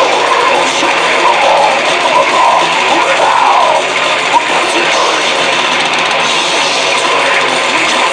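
Death metal band playing live: loud, dense distorted electric guitars, bass and drums, with a wavering, bending line over the top in the first half.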